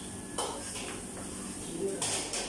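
Kitchen knife chopping vegetables on a plastic cutting board: two sharp knocks in the first second, then lighter cutting.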